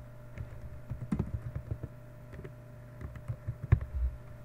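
Computer keyboard typing: a quick run of keystrokes about a second in, then a few more near the end, the sharpest just before it ends. A steady low hum runs underneath.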